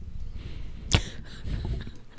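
A single sharp knock about a second in, over faint low rumbling room noise.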